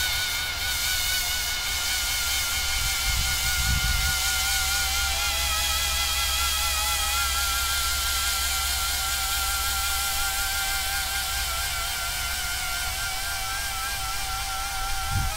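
Coaxial copter's electric motors and counter-rotating propellers running in flight, a steady whine whose pitch wavers slightly and continually. A low rumble sits underneath, swelling briefly about three to four seconds in.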